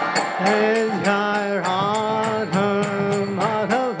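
A man chanting a Sanskrit devotional prayer in long held notes that slide at their ends, with small hand cymbals (karatalas) striking a steady beat about two and a half times a second.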